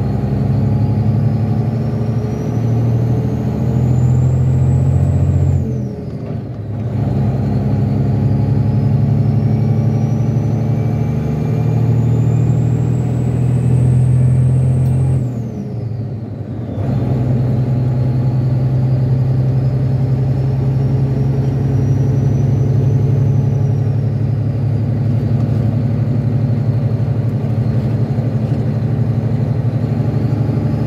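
A semi truck's diesel engine, heard from inside the cab, pulling up through the gears. The engine note and a high whine climb together, break off briefly for an upshift about six seconds in and again about sixteen seconds in, then settle into a steady run.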